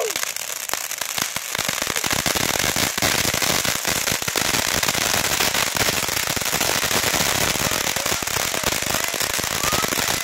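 Four ground fountain fireworks burning at once: a continuous hiss of spraying sparks packed with rapid crackling pops, which gets louder about two seconds in.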